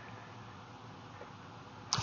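A pause in the talk with only a faint, steady hiss of background noise from the broadcast recording; a man's voice starts right at the end.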